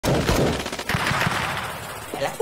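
Rapid, continuous machine-gun fire from a group of tankettes, an animated battle sound effect, easing off toward the end.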